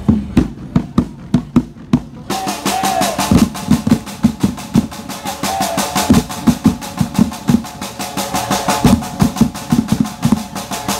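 A supporters' drum band of snare and tom drums playing: a few spaced strikes at first, then about two seconds in the full group joins in a fast, steady rhythm with the snares rattling.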